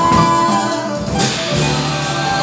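A small band playing live: a drum kit with cymbals, together with guitar, bass and piano.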